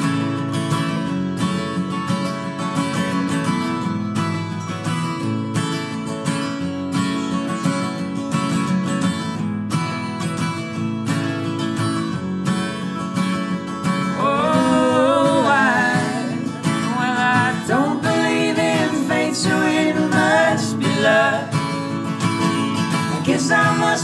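Three acoustic guitars strumming and picking an instrumental folk passage; singing voices join a little over halfway through.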